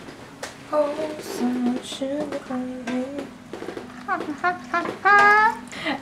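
A young voice singing a short tune of held, stepping notes, breaking into a few quicker rising and falling vocal sounds near the end.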